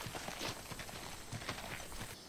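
Quiet outdoor background ambience of a TV drama scene, with soft, irregular ticks and taps.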